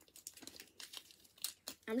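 Plastic sweet wrapper crinkling in the hands, a string of short irregular crackles.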